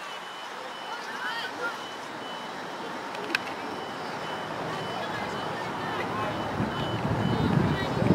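A reversing alarm on heavy machinery beeping steadily, about two high beeps a second. A single sharp crack about three seconds in, and a low rumble building near the end.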